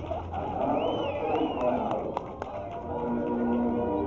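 Crowd chatter without clear words, with a few sharp clicks, and then held musical notes starting about three seconds in.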